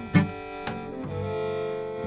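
Acoustic bluegrass trio playing between sung lines: bowed fiddle holding notes over an acoustic guitar and plucked upright double bass, with a sharp plucked note just after the start.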